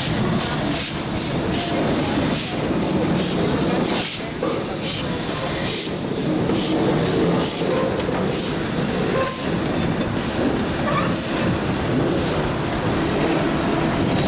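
Steam locomotive R707, a Victorian Railways R-class 4-6-4, moving slowly past with a steady beat of exhaust chuffs, a few each second, and hissing steam.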